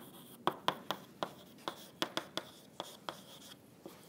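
Chalk tapping and scraping on a blackboard as a line of text is written: a quick, irregular series of short sharp taps.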